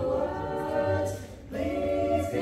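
A cappella jazz choir of mixed voices singing in close harmony without instruments, holding sustained chords; the sound dips briefly about a second and a half in before the next chord comes in.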